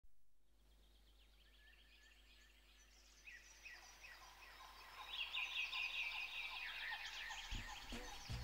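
Near silence at first, then a chorus of bird calls fading in about three seconds in. Many quick chirps and trills overlap and grow louder.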